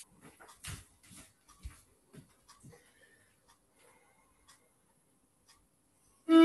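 Faint footsteps of soft dance shoes on a tiled floor: about six soft steps in the first three seconds, then near silence.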